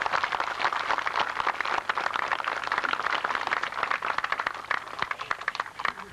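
Crowd applauding: a dense patter of many hands clapping that thins slightly near the end.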